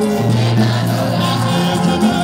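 Gospel music with a choir singing over a steady bass line.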